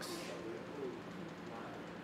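A bird cooing faintly, a few short low calls in the first second, over a faint steady hum.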